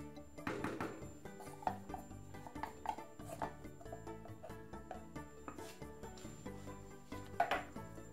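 Soft background music with a guitar, and a few short scrapes and knocks of a wooden spoon stirring thick corn porridge in a metal pot.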